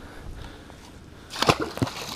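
A wiper (hybrid striped bass) splashing into the lake as it is let go over the side of the boat: a sharp splash about one and a half seconds in, followed by a few smaller splashes, after a stretch of low steady background noise.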